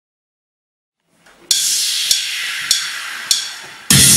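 Drum-track cymbal intro to a cumbia: silent at first, then about a second and a half in a cymbal crash rings and fades, with three more evenly spaced cymbal strikes counting in. Right at the end the full cumbia backing and accordion start.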